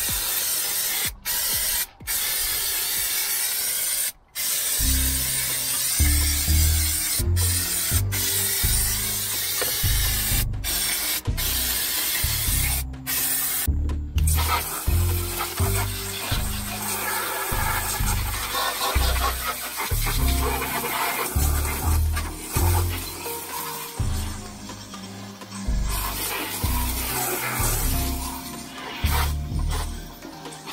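Aerosol can of engine degreaser sprayed over an engine in a series of hissing bursts with short breaks, through about the first half. Background music with a steady beat comes in about four seconds in. In the later part a garden hose sprays water over the engine bay.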